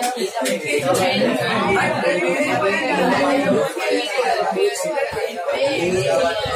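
Many voices talking at once: students chattering in a classroom, with no single voice standing out.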